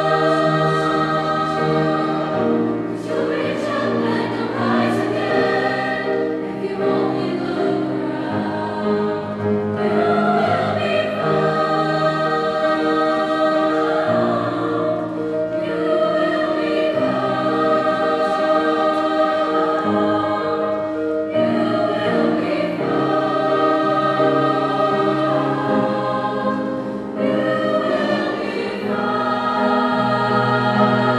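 Mixed-voice choir singing a choral piece in sustained chords, accompanied by grand piano.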